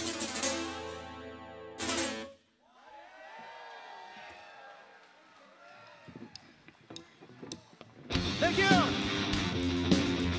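Live heavy metal band playing a loud ringing passage that cuts off sharply about two seconds in. A few seconds of crowd shouting and cheering follow, with a few claps. About eight seconds in, the full band with electric guitar and drums crashes back in, the guitar bending notes up and down.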